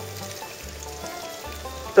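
Soft background music in a pause of the narration: held low bass notes coming in repeated blocks, with a few faint sustained higher notes.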